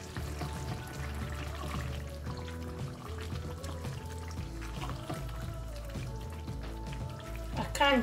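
Background music with held tones over a stepping bass line. Under it is the soft bubbling and stirring of a tomato stew simmering in a pan.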